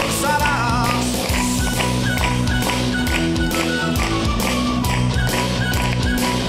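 Live rock band playing an instrumental passage between sung lines: regular drum beats under guitar and long held melody notes.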